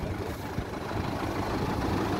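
Tractor engine idling steadily close by.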